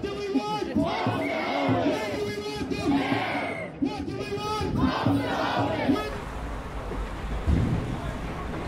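A crowd of protesters shouting together in loud, raised voices. About six seconds in it gives way to the low, steady rumble of city street traffic.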